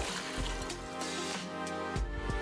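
Background music over the splash of milk being poured from a glass measuring cup into a metal pot.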